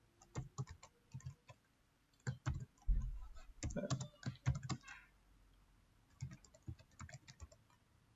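Computer keyboard typing: runs of quick keystrokes in several bursts, with a short pause a little past the middle.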